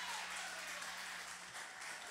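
Audience applause in a small venue, slowly fading.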